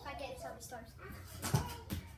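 A stunt scooter hitting the concrete paving: two sharp knocks close together near the end, the first the louder. Voices talk earlier on.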